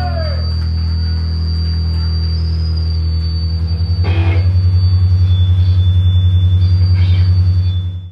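A live rock band's last chord ringing out from amplified electric guitars and bass as a sustained low drone. About four seconds in it grows louder and takes on a rapid, even pulsing, then fades out at the very end.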